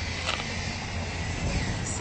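Steady outdoor street noise: a low rumble under an even hiss.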